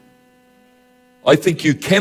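A faint steady hum with several evenly spaced overtones during a pause, then a man's voice speaking into a microphone from about a second in.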